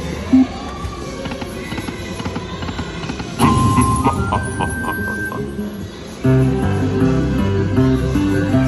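Aristocrat Dragon Link slot machine sounds: a little before halfway a spin starts, with a run of clicks and electronic chime tones as the reels stop, then about six seconds in a stepped electronic win melody plays as a small win counts up on the meter.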